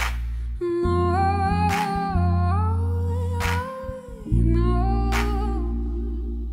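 Live band playing a slow groove: deep held bass notes, a sharp percussive hit about every 1.7 seconds, and a held melody line gliding between notes over them, with no sung words.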